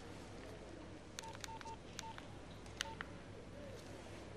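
Phone keypad being dialed: about five short, quiet, single-pitched key beeps, each with a click, in an uneven run between one and three seconds in.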